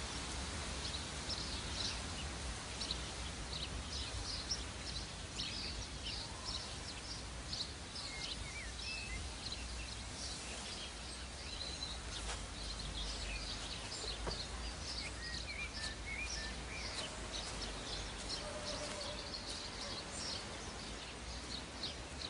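Outdoor ambience of small birds chirping, with many short high chirps and a few brief whistled notes throughout, over a low steady rumble.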